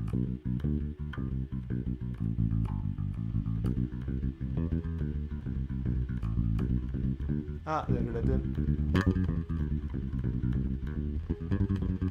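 Electric bass guitar played fingerstyle: a continuous run of quick, separately plucked low notes with the pitch stepping from note to note, as a practice exercise. A short vocal 'ah' cuts in about eight seconds in.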